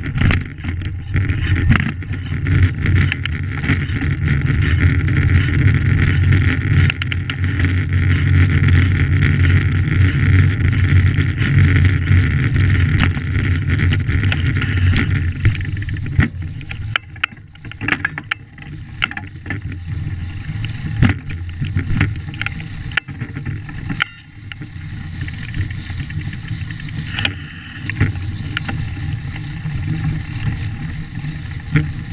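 Riding noise from a vehicle with a knobby tyre on a bumpy dirt trail: a steady low drone for the first half, then dropping about halfway in, with frequent sharp rattles and knocks from the rough ground.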